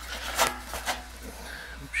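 Work glove brushing and scraping over the burnt, rusted sheet steel of a sauna stove's heater box: a short rasping scrape about half a second in and a softer one just before a second in.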